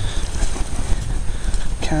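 Low rumbling wind and handling noise on a handheld camera's microphone as it is carried quickly through grass, with scuffing steps; a voice says "calm" at the very end.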